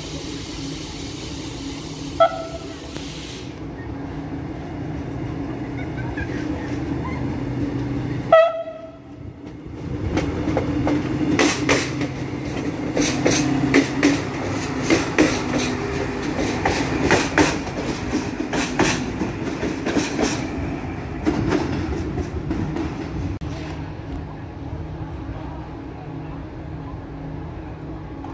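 Passenger train running past on the adjacent track: two short horn toots about two and eight seconds in, the second louder. Then the coaches roll by, their wheels clacking over the rail joints, before dying away near the end.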